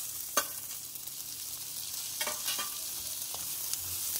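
Onions and tomato slices sizzling in hot oil in a nonstick kadai, stirred with a spatula that scrapes and knocks against the pan. There is a sharp knock about half a second in and a run of scrapes a little past two seconds.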